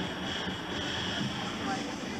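Indistinct background voices over a steady rush of room noise.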